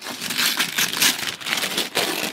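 Christmas wrapping paper crinkling and tearing as a small dog tears at a wrapped gift box, a dense run of crackles throughout.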